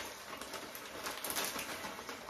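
Shredded cheese shaken from a plastic bag into a stainless steel bowl: a soft rustle of the bag with many faint little ticks of falling shreds.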